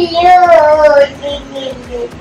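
A high voice singing one long drawn-out note that drifts slightly lower, fading out near the end.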